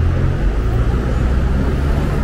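Low, steady rumble of downtown street traffic, with the engine of a nearby vehicle running.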